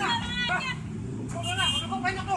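Road traffic running steadily on a busy street, with people's voices talking over it.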